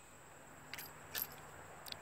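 Three faint, light clicks, spaced out over about a second, from handling a Smith & Wesson 317 .22 revolver with its cylinder swung open while the chambers are turned and inspected.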